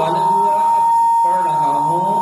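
A steady, high-pitched electronic tone, like a long beep, sounds without a break over a man's lecturing voice.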